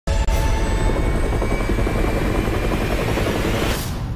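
UH-1 Huey helicopter's rotor and engine running loud and close, a dense low beating with a steady high whine above it. A brief rushing swish comes near the end.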